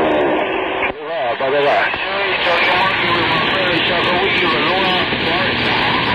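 CB radio receiving a long-distance skip station on 27.025 MHz: a garbled voice, wavering in pitch, under a steady hiss of band noise.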